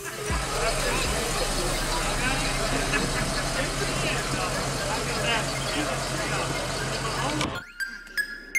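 Ford Mustang Mach 1's V8 idling steadily, with people talking around it.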